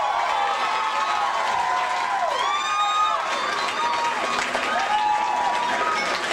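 Audience applauding and cheering after a spoken-word poem, with repeated whistles that rise and fall in pitch over the clapping.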